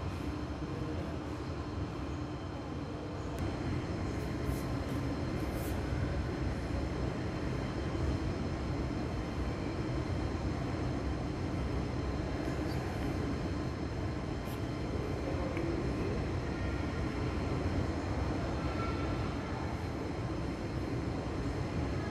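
Steady low rumbling background noise of an indoor shopping mall, with a few faint clicks about four to six seconds in.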